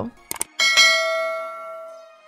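Two quick mouse-click sounds, then a single bell chime that rings on and slowly fades: the sound effect of an animated subscribe button and its notification bell.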